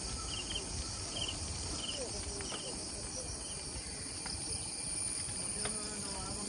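A steady, high-pitched chorus of insects, with a repeated double chirp about every 0.7 seconds that fades out around the middle. A low rumble lies underneath.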